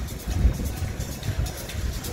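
Wind buffeting a phone's microphone while cycling, a low uneven rumble in gusts, over street traffic noise.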